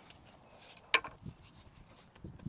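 Quiet scraping and rustling of garden soil as a hand trowel digs a planting hole and gloved hands work the dirt, with one sharp click about a second in.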